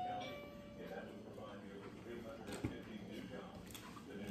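Faint chewing of a mouthful of sandwich, with a single soft click a little past halfway.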